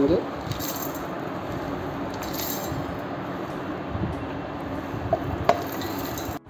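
Dry-roasted whole spices (cumin and carom seeds, black peppercorns, black cardamom pods and cloves) sliding off a tray into a stainless steel grinder jar: a steady pattering rattle of seeds and pods on the metal, with a couple of sharper clicks near the end.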